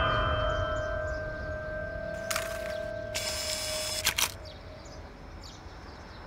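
A steady, high ringing tone in the film's soundtrack that slowly fades out about five seconds in, with two short bursts of hiss-like noise near the middle and faint bird chirps.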